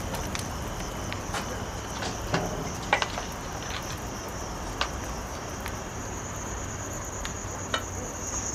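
Crickets chirping in a steady high-pitched trill, with a few scattered light clicks and taps.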